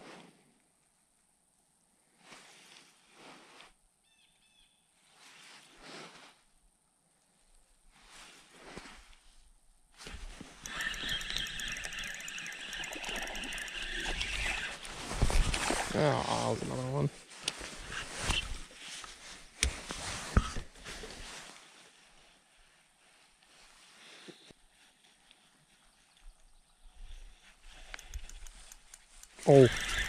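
A hooked crappie splashing and churning at the surface beside an aluminium boat as it is played on a spinning rod and reel, louder for about ten seconds in the middle. A brief voice-like sound partway through.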